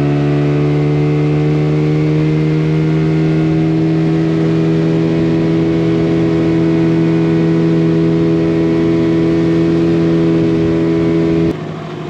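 Outboard motor on a small aluminium tinny running at a steady cruising speed: a loud, even hum holding one pitch, which stops abruptly shortly before the end.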